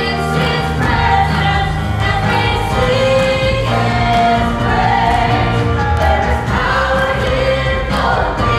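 A worship song sung live by a praise team of several women and a man on microphones, backed by electric guitar, keyboard and drum kit.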